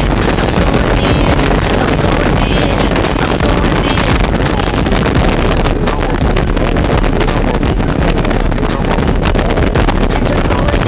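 Twin Evinrude 250 two-stroke outboard motors driving a 32 ft Scorpion speedboat at speed, a loud steady roar with the rush of water, under heavy wind buffeting on the microphone.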